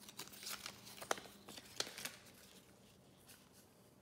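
Paper slips rustling and crinkling as a hand rummages in a cap and pulls one out, with a couple of sharp crackles in the first two seconds.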